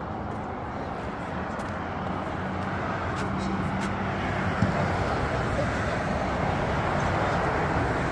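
Road traffic noise with a low, steady truck engine drone, growing gradually louder as a heavy truck and a pickup approach. A single short knock about four and a half seconds in.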